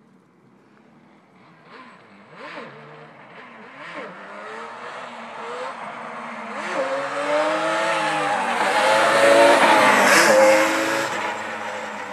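Yamaha Banshee ATV's two-stroke twin engine revving hard as the quad approaches, its pitch climbing and dropping again several times. It grows steadily louder, is loudest about nine to ten seconds in, then the throttle eases off.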